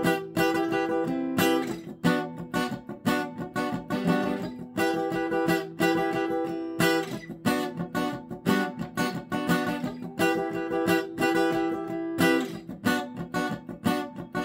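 Seagull cutaway steel-string acoustic guitar strummed in chords, a steady run of strokes with the chords ringing between them as the chord shapes change.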